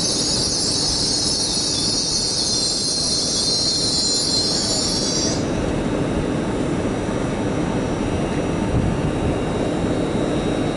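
LNER Azuma express train rumbling along the track, with a loud high-pitched wheel squeal that cuts off suddenly about halfway through, leaving the rumble and a low steady hum.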